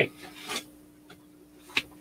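Plastic culture tub and its lid rubbing and scraping as they are handled, with a sharp click near the end, over a faint steady hum.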